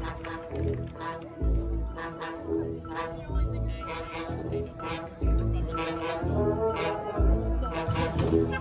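High school marching band playing, brass holding sustained chords over percussion, with repeated low booms and sharp strikes.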